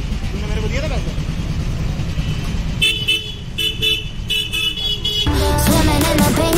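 Steady street-traffic and engine rumble, with a vehicle horn honking in several short blasts from about three seconds in. Music comes back in near the end.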